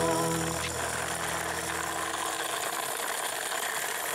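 Background music fades out in the first half second, leaving a steady, rough scraping-rolling noise of a plastic toy forklift's wheels being pushed over gritty concrete.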